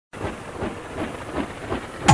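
Train running on rails, with a faint rhythmic clack about every 0.4 seconds under a steady hiss.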